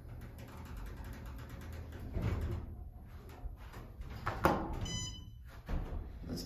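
Elevator doors sliding shut, ending in a sharp knock about four and a half seconds in, followed at once by a short, high electronic beep, over a steady low hum.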